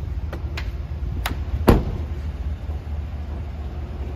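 A car's side door shut with one solid thud a little under two seconds in, just after a sharp click, over a steady low rumble.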